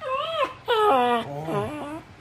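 A small curly-coated dog whining in a string of short cries that rise and fall in pitch, lower toward the end, while held down by hand. The dog is worked up after a scuffle with another dog and is being calmed.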